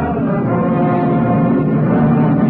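Orchestral music from a 1930s radio drama score: loud, sustained low chords with a brass, horn-like sound, swelling slightly.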